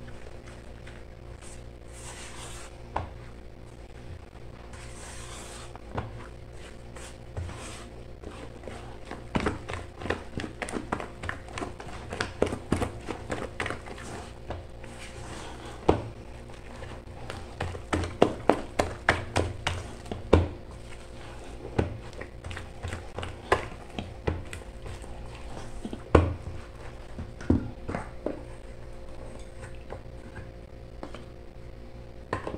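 A spatula stirring thick bread dough in a stainless-steel bowl, knocking and clicking against the metal bowl, in quick runs of several knocks a second in the middle with single louder knocks now and then. A steady low hum runs underneath.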